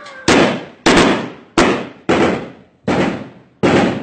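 Six gunshots fired one at a time, about half to three-quarters of a second apart, each sharp crack trailing off in a short echo.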